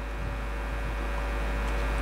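Steady electrical hum and hiss from the sound system, a low mains hum with faint steady tones above it, growing slightly louder through the pause.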